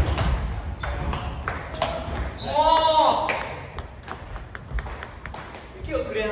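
Table tennis rally in a hall: the hard plastic ball clicking off rubber-faced bats and the table in quick succession, then a short shout from a player about two and a half seconds in as the point ends. A few scattered ball clicks follow.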